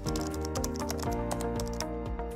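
Computer keyboard typing: a quick run of key clicks, over steady background music.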